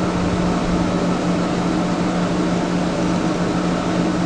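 Steady mechanical hum and hiss with one constant low tone, unchanging throughout.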